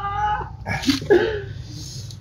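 A man's pained vocal reaction to the burn of chilli peppers: a held strained vocal tone, a sharp breathy burst about a second in, then air hissed in through the teeth.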